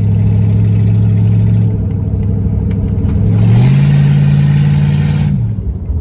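Chevrolet small-block 350 V8 in a Blazer, heard from inside the cab while driving. It hums steadily, then about midway it is given throttle: the pitch climbs and holds for nearly two seconds with a louder rush, then eases off. It runs way cleaner now that the leaking rear intake gasket that caused the misfire has been resealed.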